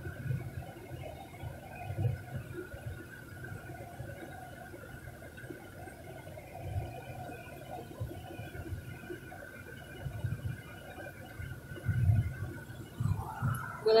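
Cabin noise of a car driving slowly: a low road and engine rumble that swells now and then, with a faint steady high whine.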